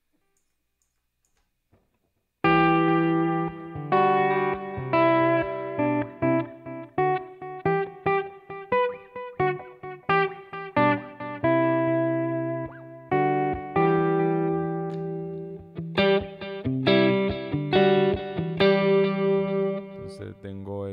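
Electric guitar played through a Line 6 Helix multi-effects unit, a Stratocaster-style guitar picking chords and single notes through a delay with its mix turned up. The playing starts about two and a half seconds in, after a silence.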